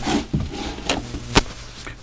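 Three sharp clicks: one at the start, one just under a second in and a last one about half a second later.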